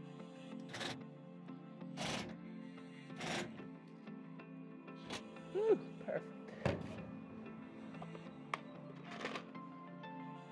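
Soft background music runs throughout, with scattered knocks and clicks from hand work on the console and a short squeak about halfway through.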